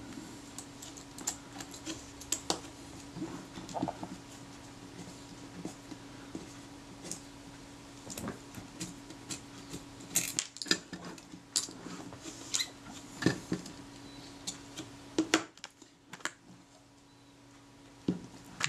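Irregular small metal clicks and taps of a screwdriver and small parts being worked on the top of a Kodak Retina Reflex S camera body, with a quicker run of sharper clicks about ten to thirteen seconds in. A faint steady hum sits underneath and stops about fifteen seconds in.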